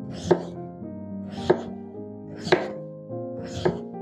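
Chef's knife slicing through a peeled raw potato and striking a wooden cutting board, four sharp cuts about a second apart. Background music plays steadily underneath.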